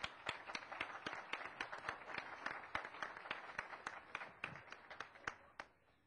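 Audience applauding, a dense run of hand claps that dies away near the end.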